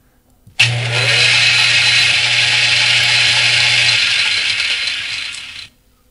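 Blender sound effect played from a slide presentation: a kitchen blender motor starts suddenly and runs at speed with a steady whirr. Its low hum drops out about four seconds in and the sound fades away.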